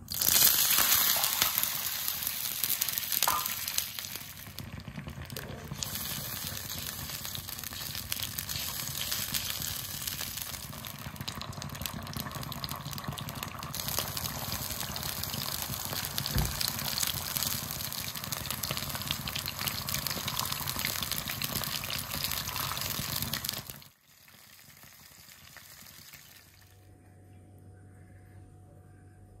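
Hot oil and sauce sizzling and bubbling in a wok as soy sauce, sweet soy sauce and oyster sauce cook in leftover garlic-and-ginger frying oil. The sizzle is loudest right at the start, runs on steadily, and cuts off abruptly about 24 seconds in, leaving a faint low hum.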